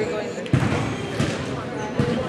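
A basketball bouncing on a gym's wooden floor, two thumps about half a second apart, over the murmur of crowd and player voices.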